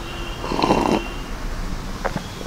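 A short slurp of a thick oats-and-banana smoothie being drunk from a cup, about half a second long and starting about half a second in.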